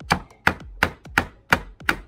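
Hand tool striking the wooden soffit boards in a steady rhythm, about three sharp knocks a second.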